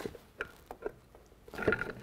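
A few faint clicks and knocks as a relined clutch plate is worked by hand onto the newly made splined shaft of a Vickers Light Mark IV gearbox.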